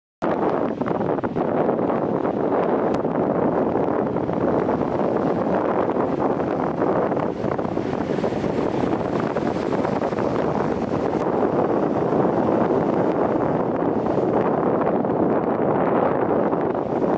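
Steady wind noise on the microphone with the rush of sea waves beneath it, cutting in suddenly just after the start.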